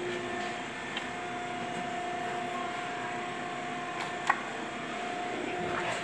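Steady electrical hum with a faint held tone from the energised machine control panel, and a light click about a second in and a sharper click a little after four seconds in.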